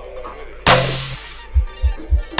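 Electronic dub riddim in a garage/dubstep style, played from a vinyl record. A sharp, echoing hit with a short deep bass note comes about two-thirds of a second in, and three quick low thumps follow near the end.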